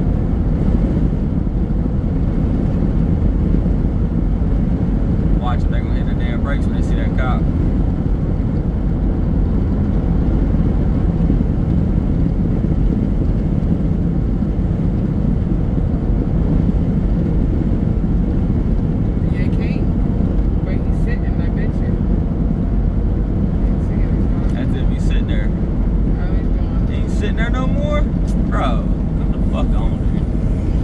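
A car driving at highway speed, heard from inside the cabin: a steady, loud, low rumble of road and engine noise.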